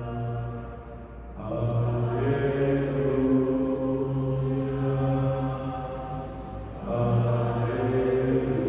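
Slow devotional chant-like music of long, steady held notes in phrases: one phrase fades out about a second in, the next swells in shortly after and holds several seconds, and a new phrase starts near the end.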